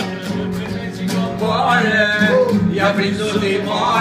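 Two acoustic guitars strummed together while a man sings.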